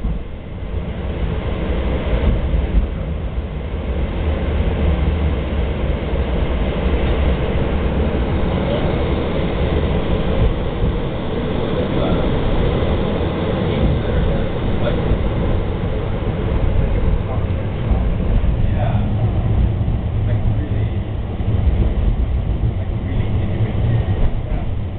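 Portland MAX light rail train heard from inside the car as it runs across the Steel Bridge: a steady, loud rumble of wheels on the rails and running noise, continuous throughout.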